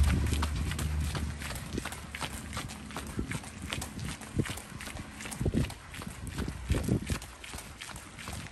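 Running footfalls on a paved street: a steady run of short, repeated steps from two runners jogging, with the camera moving along with them.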